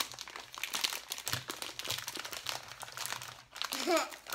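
Plastic snack bag crinkling and crackling as it is pulled and worked open by hand, a dense run of crackles that lets up briefly near the end.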